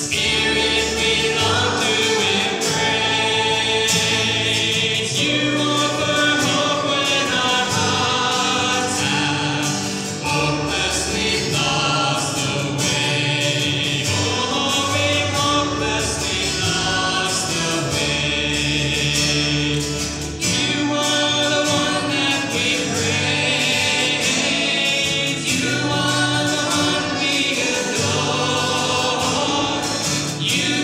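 A small mixed group of men's and women's voices singing a gospel hymn together, accompanied by acoustic guitars and an upright bass. There are short breaks between phrases about a third and two thirds of the way through.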